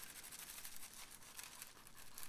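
Faint scratching of a graphite pencil sketching quick shading strokes on tracing paper.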